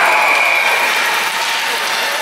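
Spectators in an ice rink cheering and clapping, with a long high steady tone held over the noise for the first second and a half before it fades.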